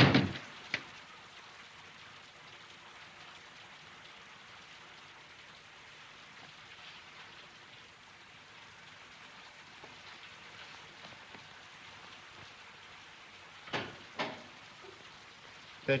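A door shutting with a loud thud at the very start, then the faint steady hiss of an old film soundtrack with no other sound. Two short sharp knocks come near the end.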